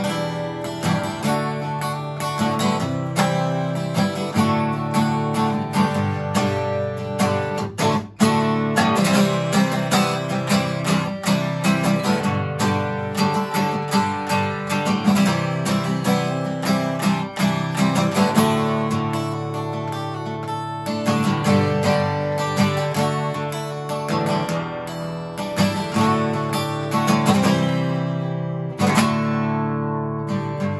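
Yamaha FG441S solid-spruce-top acoustic guitar played solo with open chords, ringing continuously, with one brief break about eight seconds in.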